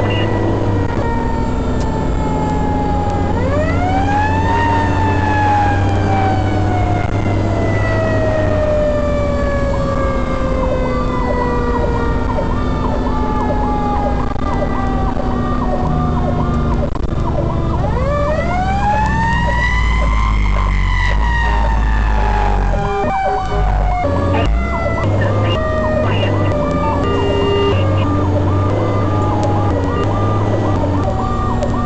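Fire engine running with its siren: the siren winds up twice, about three seconds in and again around eighteen seconds, and each time falls slowly over several seconds. A second, faster-cycling siren tone and a steady low engine rumble run underneath.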